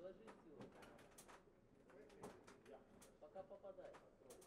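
Faint ringside sound of a boxing exchange: scattered light thuds and taps of gloved punches and feet on the ring canvas. There are short voice calls near the start and again about three seconds in.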